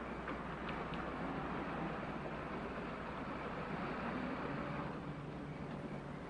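A car driving along with its engine running steadily, along with road and tyre noise.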